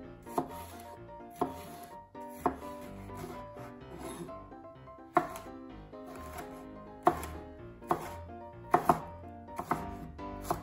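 Knife chopping on a cutting board in single strokes, irregularly spaced about a second apart, with a pause in the middle and a quick double chop near the end.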